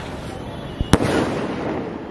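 Cock Brand 'Merry Go Round' sky-shot firework bursting in the air: a small pop, then one sharp bang about a second in, with a short echoing tail.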